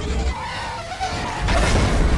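Movie sound effects of a TIE fighter streaking past: a loud engine howl with wavering pitch over a heavy low rumble.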